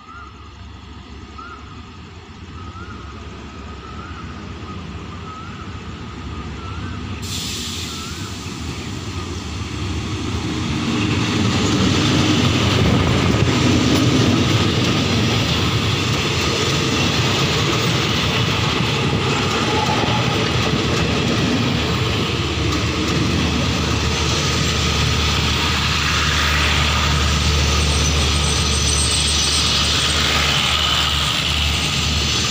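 SRT GEA-class diesel-electric locomotive 4524 hauling a passenger train, approaching and growing steadily louder until it passes about eleven seconds in. Its coaches then roll past with a steady, loud wheel-on-rail rumble and clatter.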